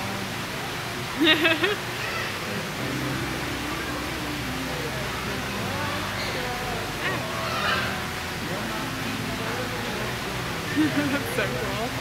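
Steady rushing background noise with faint, indistinct voices in it, and a short loud vocal sound about a second in.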